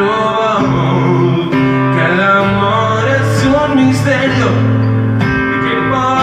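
Live acoustic guitar playing, with a man singing held, wavering notes over it.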